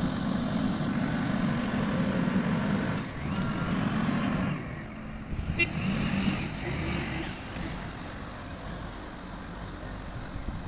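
Heavy diesel engine of a Sany reach stacker running under load while it drives and works its boom. It is loud for the first four seconds and again from about five and a half to seven seconds, then eases off in the second half.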